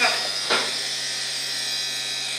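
Vacuum conveying system's blower running: a steady high whine with air hiss, and a short click about half a second in.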